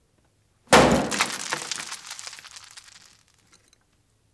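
A ukulele smashed to pieces: one sudden loud crash about three-quarters of a second in, followed by cracking and rattling of splintered fragments that dies away over about three seconds.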